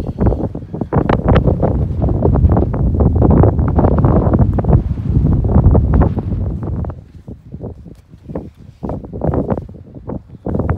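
Wind buffeting the microphone on an exposed mountain summit: a loud, gusting rumble that eases off about seven seconds in.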